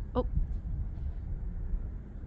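Distant sonic boom from a SpaceX rocket, heard as a low rumble that is strongest in the first second and then dies away slowly, with a short "Oh" at the start.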